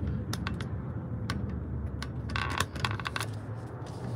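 Irregular small clicks and light clinks from a phone and its mount being handled as the camera is turned around, with a short rattling cluster about two and a half seconds in. Under them runs the low, steady hum of the car cabin.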